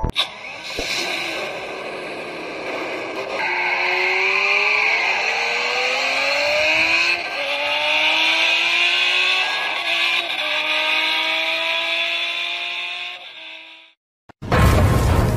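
A car engine accelerating hard through the gears. Its pitch climbs in three long runs with two sudden drops at the gear changes, and it fades out near the end.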